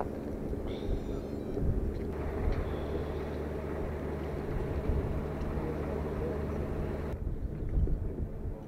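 Low, steady engine hum of heavy machinery running at the rocket's rail transporter-erector, with faint voices of the pad crew. The sound changes abruptly about two and seven seconds in.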